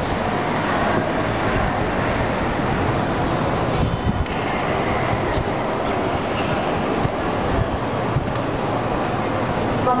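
Steady rushing background din with faint, indistinct voices in it, as of a crowd in a large reverberant room.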